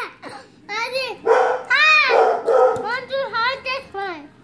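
A young child's shrieking, squealing laughter: three or four drawn-out, high-pitched cries, each rising and falling in pitch, with short breaks between them.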